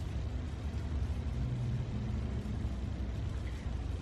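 A steady low background rumble with a faint hum in the middle, and no distinct sound event.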